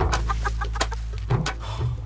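Auto-rickshaw (three-wheeler) engine idling with a steady low chugging, having started just before.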